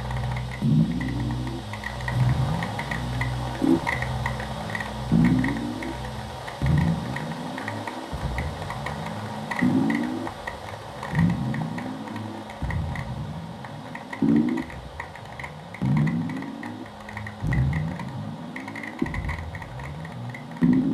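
Live electronic noise music from self-made instruments: a low, rising swoop repeats about every second and a half over a steady low drone, with a rapid patter of high clicks on top. The deepest part of the drone drops away about a third of the way in.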